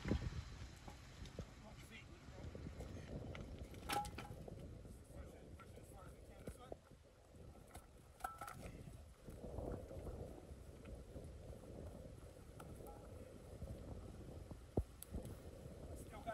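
Rocks being shifted and set in place by hand, quiet for the most part, with a couple of sharp rock-on-rock knocks about four seconds in and near the end.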